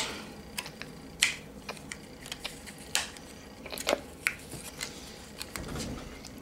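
Hands fiddling with a small object, making scattered light clicks and rustles at an irregular pace, a few of them sharper than the rest.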